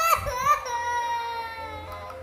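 A toddler crying over a dose of liquid medicine: a couple of short cries, then one long wail held for over a second.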